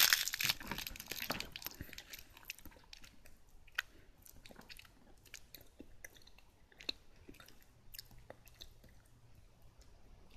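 Mouth chewing a crunchy chocolate-coated biscuit snack. The crunching is dense and loudest at first, then thins to sparse soft chewing clicks.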